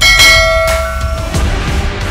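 Dramatic background music with a bell-like strike at the start that rings out and fades over about a second and a half.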